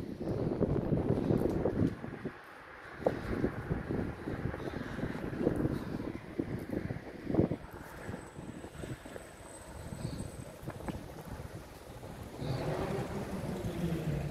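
Wind buffeting the microphone, with street traffic passing on the road.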